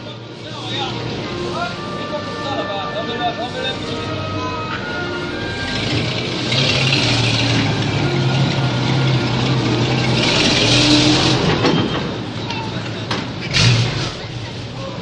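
Engine of a WWII-era US Army truck running as the truck drives slowly past close by, growing louder about six seconds in and again near ten seconds. Voices of onlookers are heard around it.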